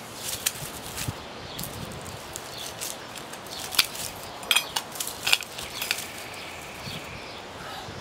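Digging in dirt and stones with a hand trowel and bare hands: irregular scrapes and small sharp knocks as a buried crystal is worked loose from the ground.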